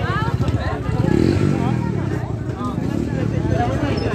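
A small motor vehicle's engine running steadily with a fast, even pulse, with people talking over it.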